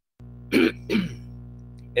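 A man clears his throat with one short cough into his hand about half a second in, ending in a brief voiced sound that falls in pitch.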